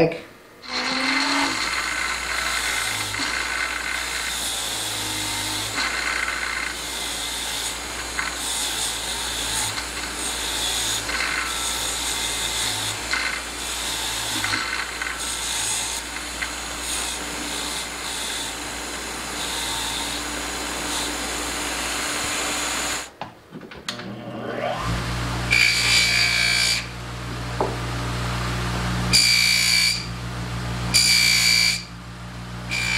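Bench grinder motor running with a brass wire wheel, scratching unevenly as small brass-plated metal plates are pressed against it to strip the flaking plating. Most of the way through it stops, and a bench buffer motor takes over with a louder hum, its buffing wheel scraping against the metal plates.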